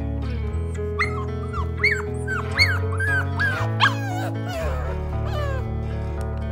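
Background music with steady bass notes, over which a pitbull–Staffordshire terrier mix puppy whimpers and yips in a run of short, high, rising-and-falling cries from about a second in to past the middle.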